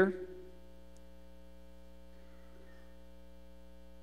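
Steady electrical mains hum, a buzzy drone with many evenly spaced overtones, unchanging throughout.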